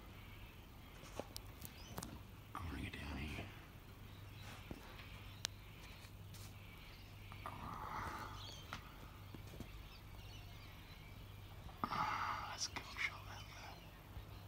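A man's faint whispering close to the microphone in three short spells, with a few light clicks from the handheld camera. No aircraft sound is heard: the distant jet is inaudible.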